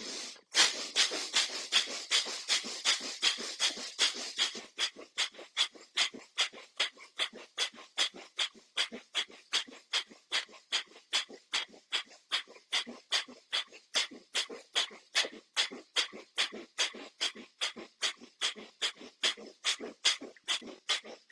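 Bhastrika pranayama (bellows breath): a man breathing forcefully in and out through the nose in a fast, even rhythm, about three to four strokes a second. The strokes are louder and run closer together for the first four seconds or so.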